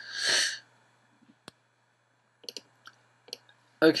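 A heavy sigh into the microphone lasting about half a second, then a single sharp click about one and a half seconds in and a few lighter clicks near the end, as the computer is clicked.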